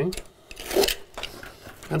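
Glue-down carpet being peeled up from a concrete slab by hand. There is a short rasping rip just under a second in, then a fainter one.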